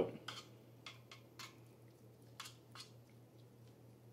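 Faint squishing and a few soft, scattered clicks as cooked food is pressed flat in an air-fryer basket by hand and with a metal spoon.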